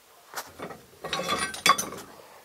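Loose metal truck suspension parts clanking and rattling against each other as they are rummaged through and lifted from a pile. A couple of light clicks come first, then a burst of metallic clatter with ringing in the second half.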